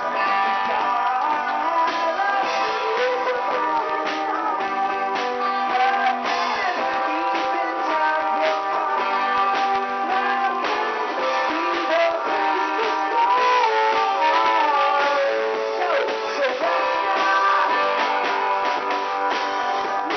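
A small live acoustic band playing a song: acoustic guitars and keyboard chords, with a wavering melody line on top, going on without a break.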